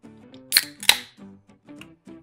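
Ring-pull of a Coca-Cola can being cracked open: two sharp snaps about a third of a second apart, the first trailing a brief hiss. Quiet background music with plucked notes plays under it.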